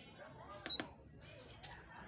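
Short high beep from a Walton digital price-computing scale's keypad as a key is pressed during calibration, about two thirds of a second in, followed about a second later by a brief scratchy noise.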